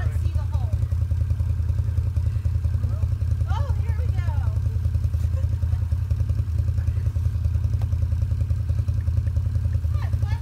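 Side-by-side UTV engine idling steadily with a low, even pulse.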